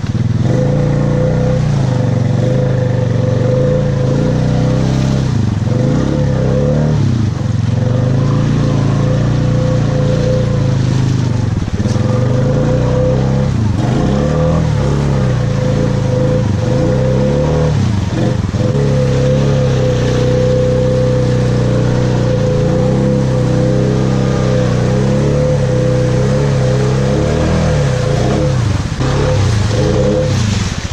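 A Honda ATV's single-cylinder engine is worked hard through deep mud and water, its revs rising and falling over and over, with a steady whine over the engine note.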